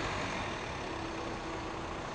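A car's engine running as the car rolls slowly forward, a steady low engine and tyre noise with a faint held low tone under it.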